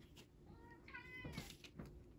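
A faint, high-pitched animal call, about a second long, rising and then falling in pitch, starting about half a second in.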